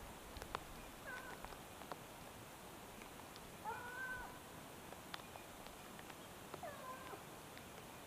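Hunting hounds baying faintly in the distance, on the trail of a roused wild boar. Three drawn-out bays, the loudest in the middle.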